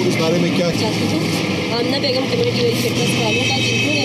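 People talking, with a steady high whine coming in under the voices about three seconds in.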